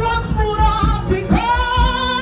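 Church praise music: singing voices, a woman's among them, over a band with a steady beat.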